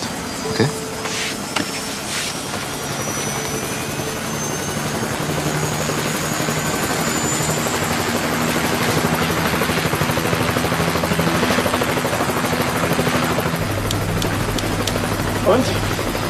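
Helicopter turbine and rotor running up, growing steadily louder, with a faint rising whine over the first few seconds. A deeper low hum joins near the end.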